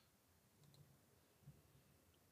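Near silence: faint room tone, with one faint click about one and a half seconds in.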